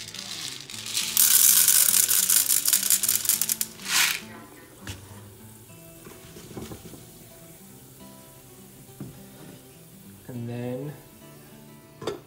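Popcorn kernels poured from a jar into a saucepan of hot oil, loud rattling and sizzling for about three seconds. After that the pan sizzles faintly under background music.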